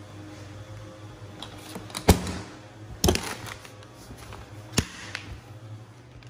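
Black hard-shell plastic equipment case being shut: the lid comes down and its latches snap closed, giving three sharp knocks about two, three and nearly five seconds in, the first the loudest, with a few lighter clicks between.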